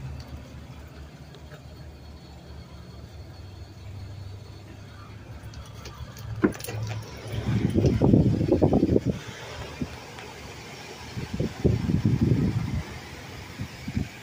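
An SUV's front door unlatches with a sharp click about halfway through, then low rumbling knocks as the door swings open and the camera moves into the cabin, twice. A low steady hum runs under the first half.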